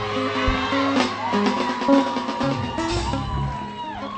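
Live church band music: held keyboard chords over a steady bass note, with drum hits near the start.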